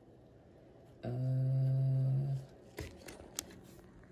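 A man's low, steady hum, a thoughtful "hmm" held for over a second, followed by a few faint clicks of a coin being handled under a microscope.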